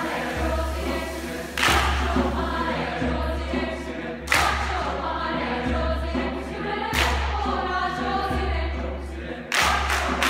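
Mixed choir singing a chant-like melody, with sharp group hand claps about every two and a half seconds. Near the end the clapping quickens to several claps a second.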